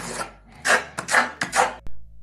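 Rounded steel trowel scraping wet filler across a plaster wall in quick diagonal strokes, about three short scrapes in a row.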